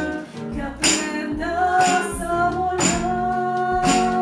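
A woman singing to a nylon-string classical guitar, with tambourine hits marking the beat; from about halfway through she holds one long note.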